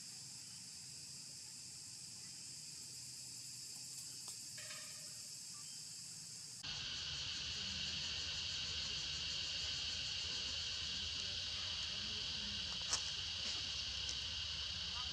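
Steady outdoor insect chorus, a continuous high-pitched drone, which abruptly gets louder and lower-pitched about six and a half seconds in. A single sharp click comes near the end.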